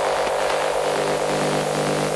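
Electronic dance music in a breakdown: a held, buzzing synth chord over a wash of white-noise hiss, with no clear beat.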